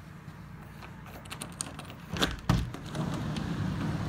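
A front door and a glass storm door being opened: a few small latch and handle clicks, then two sharp clunks about two and a half seconds in. After them, steady road traffic noise from outside comes in.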